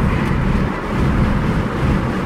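Steady road and engine noise inside the cab of a supercharged 2008 Roush F-150 pickup while cruising, a low rumble with no distinct revving.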